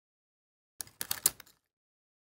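Die-cut cardstock petals crackling and clicking as a paper flower layer is pressed down into place by hand and stylus: a short run of small clicks about a second in, lasting about half a second.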